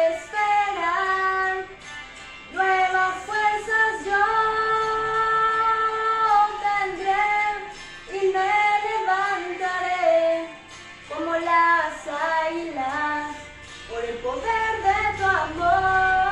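A woman singing a slow Spanish worship song solo: sung phrases with long held notes, separated by short breaks.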